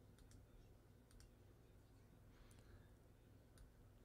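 Near silence, with about half a dozen faint, scattered computer clicks.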